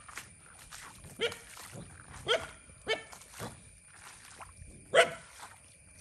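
A dog barking: about five short, single barks at irregular spacing, the loudest one near the end.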